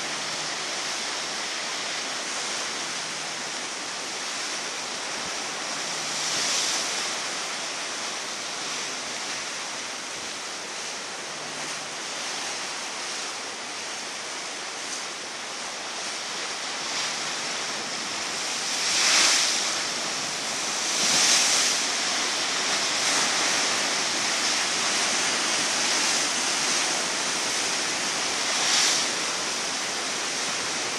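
Ocean surf breaking against big rocks at the foot of a sea cliff: a steady wash with louder surges as waves crash in. The biggest surges come about two-thirds of the way through, with another near the end.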